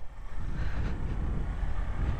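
Suzuki Van Van 125's single-cylinder engine pulling away at low speed, a steady low rumble.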